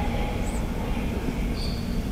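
Gymnasium ambience during a free-throw attempt: a steady low rumble with faint background crowd noise, and a brief high squeak near the end.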